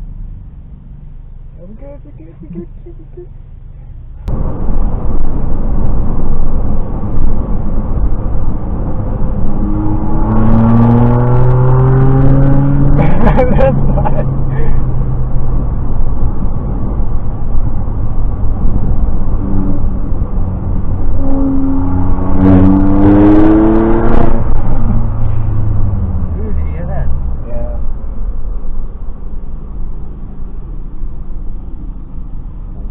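A car engine and road noise run steadily, jumping suddenly louder about four seconds in. Twice the engine accelerates hard, its note climbing as it revs up, once around the middle and again later on.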